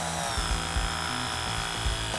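RIDGID battery-powered press tool running as its jaws press a threadless fitting onto gas pipe: a steady motor whine that dips slightly in pitch about half a second in, then holds level. Background music plays underneath.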